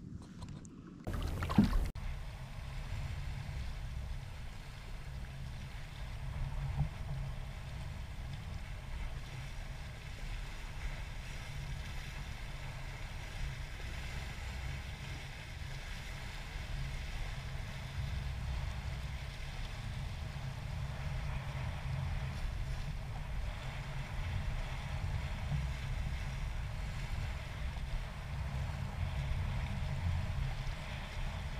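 Wind buffeting the camera microphone as a steady low rumble, with small waves washing against a rocky lakeshore. A single sharp knock comes about a second and a half in.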